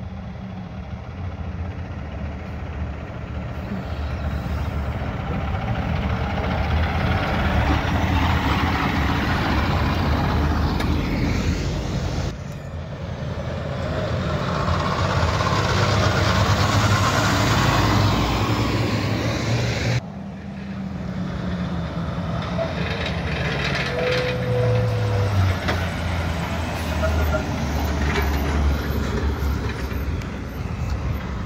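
Diesel log trucks driving through a roundabout, their engines running steadily and growing louder as a loaded truck passes close by. The sound jumps abruptly twice, and after the second jump a truck's engine note falls in pitch as it slows.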